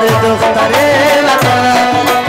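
Live Afghan folk music: a tabla's bass drum strokes swooping down in pitch under a bending melodic line from rubab and harmonium.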